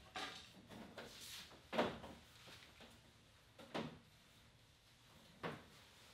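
Nylon cam straps being pulled through their buckles to hoist a canoe, in four short pulls about every one and a half to two seconds; the second, about two seconds in, is the loudest.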